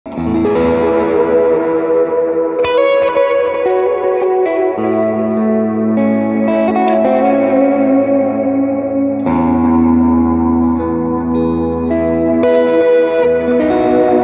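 Fena TL DLX90 electric guitar with Alnico 5 P90 pickups, played through effects: chords and single notes that ring on, with a new chord or phrase struck every second or two.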